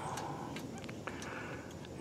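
Quiet outdoor background with a few faint, light clicks scattered through it.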